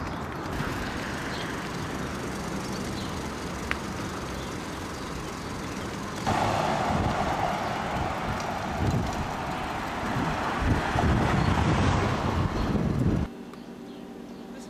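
Street traffic noise: a steady outdoor hum of cars that becomes louder about six seconds in, with low rumbles, and cuts off abruptly about a second before the end.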